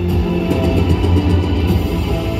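Music played over a baseball stadium's public-address speakers: sustained notes over a steady bass line.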